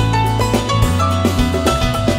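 Instrumental passage of a rock band's song: a drum kit keeping a steady beat under a strong bass line, and a melody of held notes moving step by step above.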